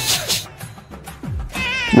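Trailer background music: a few deep sounds slide downward in pitch, then a high, wavering cry comes in near the end.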